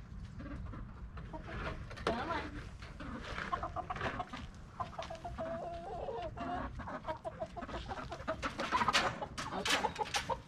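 Chickens clucking in a stream of short, repeated calls while a person reaches in among them to catch one, the flock disturbed. The calls grow sharper and busier near the end as a bird is grabbed.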